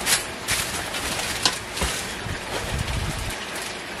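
LEGO set boxes being handled and shuffled: a handful of short cardboard knocks and rustles, the sharpest about a second and a half in.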